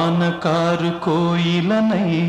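Wordless male singing in a Telugu song: short sung notes, each sliding up into its pitch, about two a second, over the song's accompaniment.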